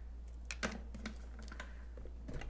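A few faint, light clicks and taps from handling objects, over a steady low hum.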